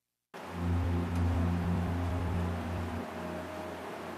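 Electronic music played live from a laptop and pad controller starts abruptly a moment in, after dead silence: a deep held bass with sustained synth chords over a hissing wash.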